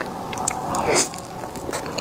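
Close-miked wet mouth sounds of a person eating soft cream cake from a fork: soft chewing and smacking with small clicks, swelling louder about a second in.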